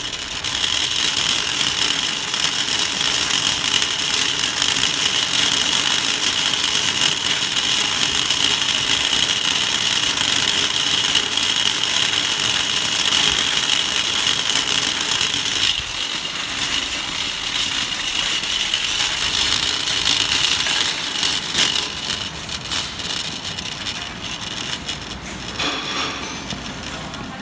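Wire shopping cart rolling over rough asphalt, its wheels and basket rattling steadily, a loud, even clatter that quietens near the end.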